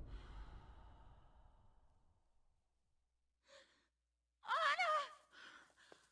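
Film soundtrack fading out over the first second into near silence, then, about four and a half seconds in, a woman's short, breathy, wavering cry like a sob or gasp, lasting about half a second, with faint breaths after it.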